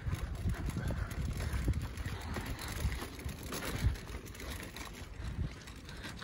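Wind buffeting a handheld camera's microphone during a walk: an uneven low rumble that rises and falls in gusts.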